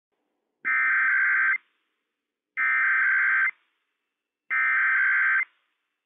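Emergency Alert System SAME header from NOAA Weather Radio: three identical buzzing bursts of digital data tones, each just under a second long and about two seconds apart. They carry the coded header that opens a Required Weekly Test broadcast.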